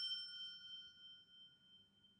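A bell-like ding ringing out with several high, clear tones, fading away over about a second and a half.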